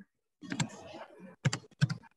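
Typing on a computer keyboard: a few sharp key clicks, the loudest two in the second half, as a word is typed.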